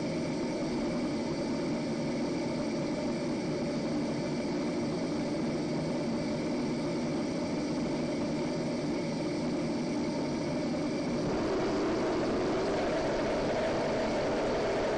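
Steady test noise from a loudspeaker driving a pipe duct to stand in for fan noise, passing through an expansion-chamber silencer lined with open-cell foam. About eleven seconds in it grows somewhat louder and brighter as the chamber's lid is opened.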